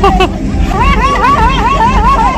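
A woman's high-pitched voice warbling quickly up and down in pitch, a playful call or laughter, over the chatter of people around.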